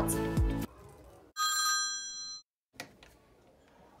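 Office desk telephone giving a single electronic ring, about a second long, made of several steady tones at once.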